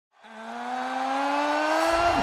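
A single sustained pitched tone fades in, then glides slowly upward in pitch as it swells in loudness.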